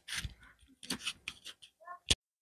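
A baby making short fussing vocal sounds, mixed with irregular clicks and rustles of handling close to the microphone, with a brief pitched cry near the end.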